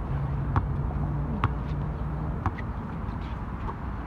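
A basketball bouncing on an outdoor asphalt court, three or four sharp knocks about a second apart, over a steady low engine hum that stops a little after two seconds in.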